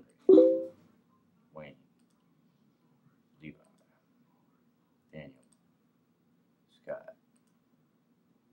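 Computer mouse button clicks, about one every second and a half to two seconds. Each click re-randomizes a list on a web page. Just after the start there is a brief, louder pitched sound, like a short hum.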